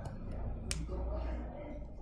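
A single sharp click of a stylus tapping the drawing surface about a third of the way in, over a faint low hum.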